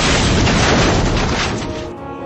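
Explosion sound effect of a demolition charge going off: one loud, sustained blast that dies away near the end, over background music.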